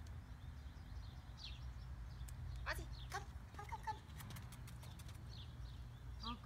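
Outdoor ambience: a steady low rumble with small birds chirping in short, falling notes, and a quick run of faint clicks about four to five seconds in.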